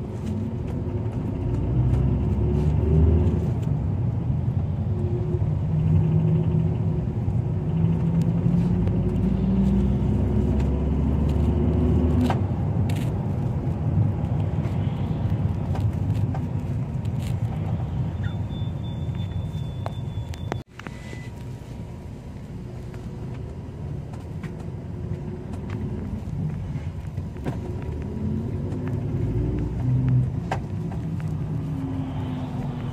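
Iveco Daily route minibus driving, heard from inside the cabin: a low engine hum with road noise. The engine note climbs during the first half as the minibus gathers speed. About two-thirds of the way in the sound breaks off for a moment, then carries on steadier and a little quieter.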